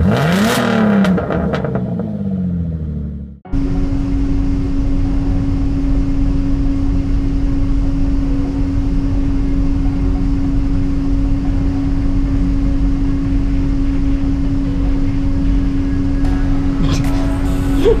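A short engine-rev sound effect over the opening title card, then after a sudden cut a steady whooshing hum with one constant tone: the ventilation fans of an enclosed automotive spray booth running.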